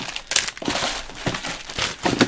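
Clear plastic zip-top bags crinkling as a hand rummages through them in a plastic bin of scrapbook embellishments, a run of irregular crackles.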